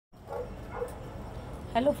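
Two short, faint dog barks over a steady low background hum, followed near the end by a woman saying "hello".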